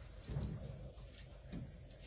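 Faint handling sounds from an arm working inside a washing machine drum, with a few light ticks and knocks.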